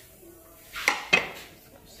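Two sharp metallic clanks about a second in, a quarter second apart, from the perforated steel steamer plate knocking in an aluminium karahi.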